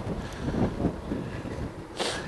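Wind rumbling across the microphone outdoors, an uneven low noise with no distinct events.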